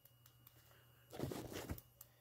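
Mostly near silence, with a brief faint murmur of a man's voice a little past a second in.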